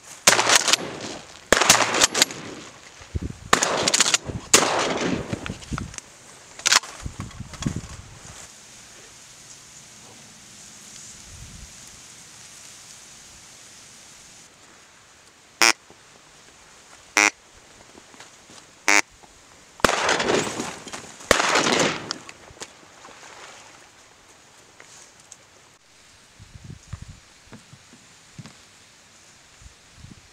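Three shotgun shots about a second and a half apart. Before and after them come several loud rustling bursts of movement in the reed blind.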